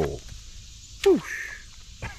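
A person's short exclamation 'oh', then about a second in a loud, sharply falling cry with a laugh.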